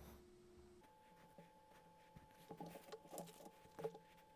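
Near silence: faint room tone with a steady electrical hum and a few soft clicks and taps near the end.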